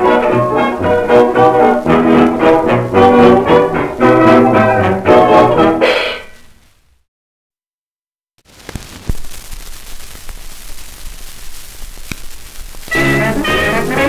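A 1920s dance-band recording on a 78 rpm record ends on a final chord about six seconds in, followed by a short stretch of dead silence. The next record's surface hiss and a few crackle clicks follow, then another dance band starts up near the end.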